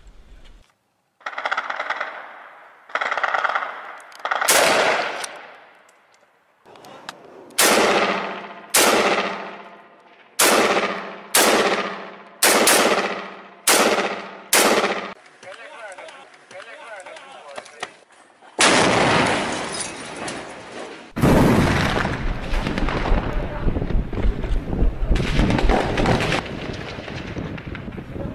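Rifle gunfire: about ten single shots, coming roughly one a second through the first half, each trailing off over most of a second. In the second half, a long stretch of loud continuous noise.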